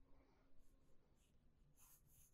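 Near silence, with faint short scratches of a pencil on drawing paper about half a second in and again near the end.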